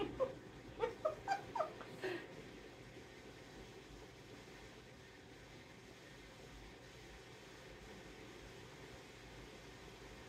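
A few short, pitched vocal sounds, some rising and some falling, in the first two seconds, made in the throat by a person whose tongue is held out of her mouth with gauze. After that, faint room tone.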